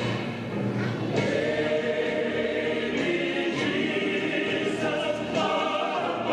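Choir singing a Christmas cantata in long, held notes.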